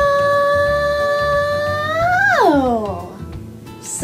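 A girl's voice holding one long, high sung note, which about two seconds in lifts briefly and then slides down and trails off. A short swooping vocal sound follows at the very end.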